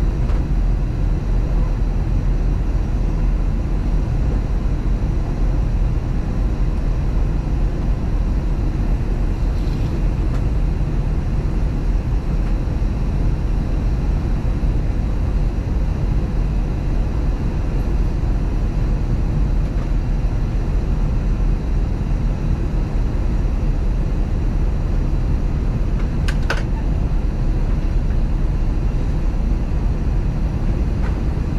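Steady cabin noise of an Airbus A321 on approach, a deep rush of airflow and engine drone heard from a window seat. There is a brief click a few seconds before the end.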